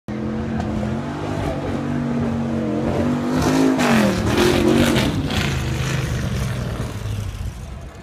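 Lola T70 Spyder's V8 engine driving past. The engine note grows louder up to about four seconds in, dips in pitch as the car passes, then fades away.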